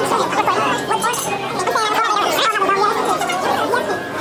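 Several voices talking over one another: lively chatter around a restaurant dinner table.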